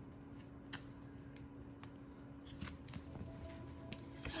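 Craft knife slitting open a paper envelope: faint scraping of the blade through the paper with a few light ticks, then paper rustling as the envelope is opened.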